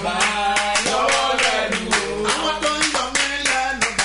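Quick, even hand clapping keeping time with a voice singing a worship song.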